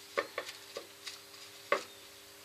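Soft pats of a sealer-soaked paper-towel pad being dabbed onto a turned sycamore bowl: four light taps, the last, near the end, the loudest, over a faint steady hum.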